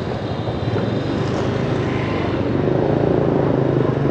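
Motorbike engine running at low speed through street traffic: a steady low drone that grows a little louder near the end.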